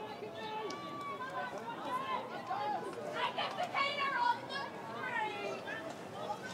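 Indistinct voices talking and calling out over a low outdoor background, loudest a few seconds in, with no clear words.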